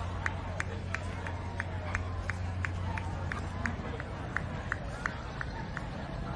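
Running footsteps of a handler jogging a Briard around the show ring: quick, even ticks about three a second that thin out near the end. Under them is a steady low hum that stops about two-thirds of the way in.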